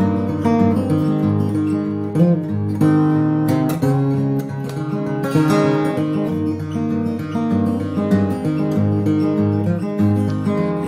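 Instrumental break in a folk song: acoustic guitar strumming chords, with no singing.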